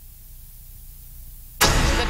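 Dead air between television commercials: a low steady hum with faint hiss. About one and a half seconds in, the music of a network promo cuts in abruptly and loudly.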